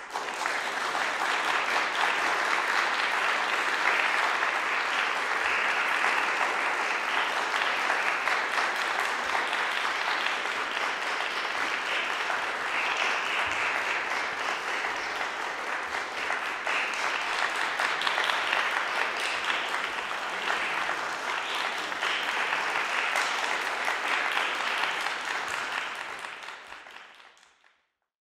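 Audience applauding: steady clapping that begins abruptly and dies away near the end.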